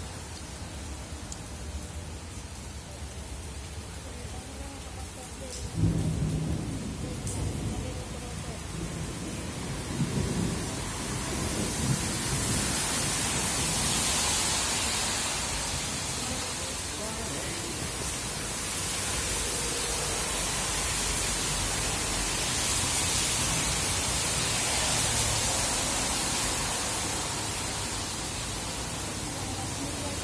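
Rain falling steadily, growing heavier about twelve seconds in and swelling in waves, with a low rumble about six seconds in.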